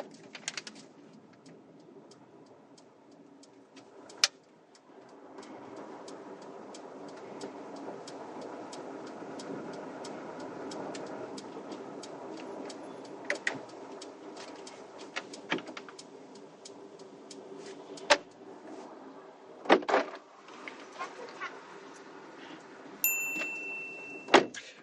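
Car cabin sound as the car pulls up and stops at the kerb. A low vehicle rumble builds from about five seconds in and dies away near twenty seconds, with scattered clicks and a few louder knocks. A short high beep sounds just before the end.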